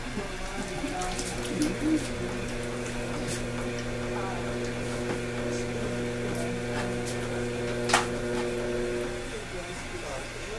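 Electric potter's wheel motor running with a steady low hum and a few steady higher tones while clay is centered on the spinning wheel head; the higher tones drop away near the end. A single sharp click about eight seconds in.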